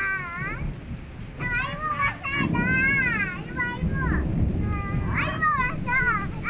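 High-pitched children's voices calling and shrieking in short bursts, over a steady wash of rain.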